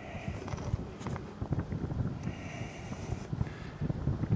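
Wind buffeting the camera's microphone, an uneven low rumble, with a few light knocks from handling and two short soft hisses.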